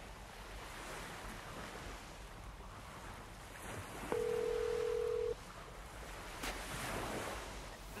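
Sea surf breaking with wind buffeting the microphone. A little after four seconds in, a single steady telephone ringback tone sounds for about a second, the ringing of a mobile call being placed.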